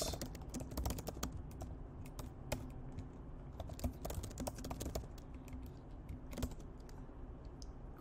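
Typing on a computer keyboard: soft, irregular key clicks as a short line of code is entered.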